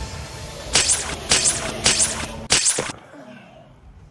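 Four quick whip-like whooshes about half a second apart, each a short, sharp swish.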